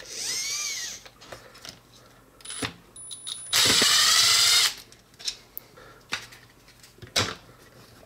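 Milwaukee M12 Fuel cordless driver running in short bursts: a brief whir near the start, then a loud run of about a second midway, backing a screw out of the RC truck's chassis T-beam.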